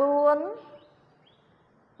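A woman's voice holding out the last syllable of a spoken word, its pitch rising at the end, cut off about half a second in. After that, only faint room tone.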